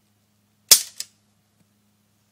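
A single shot from a Century Arms GP WASR-10 AK-47-pattern rifle firing 7.62x39mm, a sharp loud crack, followed about a third of a second later by a fainter crack.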